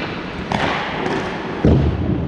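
Dull thuds of impacts on ice hockey rink boards over the steady hiss of the rink: a lighter knock about half a second in, then a louder, low thud near the end.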